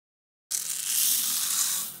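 Dry mung beans poured from a plastic cup into a porcelain bowl onto more beans: a dense, even rush of small beans. It starts suddenly about half a second in and fades out near the end.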